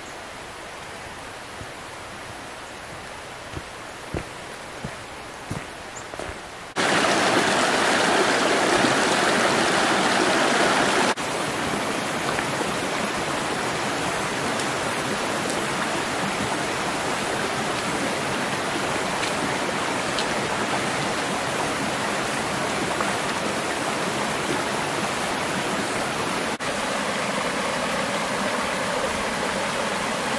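A shallow, rocky mountain stream running over stones: a steady rushing of water. It is quieter at first, with a few light footsteps on the track. About seven seconds in it turns loud for several seconds, then settles to a steady, slightly softer rush for the rest.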